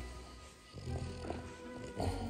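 Background music, with a brief sound from a French bulldog about a second in.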